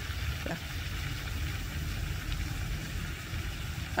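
Steady outdoor background noise: a low, fluctuating rumble with an even hiss over it, and no distinct events.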